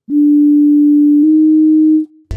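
A single steady electronic tone, close to a pure sine, shifting slightly in pitch about halfway through: a reference pitch sounded in Auto-Tune's Graph Mode while finding the right note for a vocal phrase.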